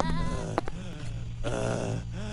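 A cartoon Minion's high, wavering gibberish voice, in two short bursts with a single click between them, over a low steady hum.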